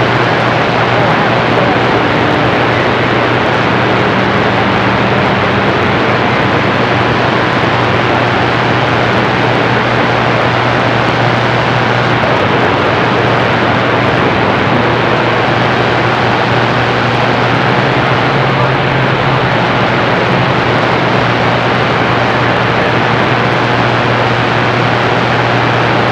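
Steady rushing static from a CB radio's speaker on receive on channel 28, with a faint low hum under it and no voice coming through. It is band noise on skip while the S-meter shows a weak incoming signal.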